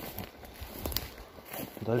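Footsteps through low shrubs and moss on a forest floor, an irregular run of soft steps and rustling.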